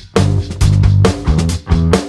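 Background rock music with electric guitar, bass and drums keeping a steady beat.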